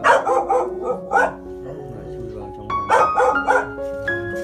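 A dog barking in short quick runs: several barks at the start, one about a second in, and another run about three seconds in, over background music of sustained keyboard notes.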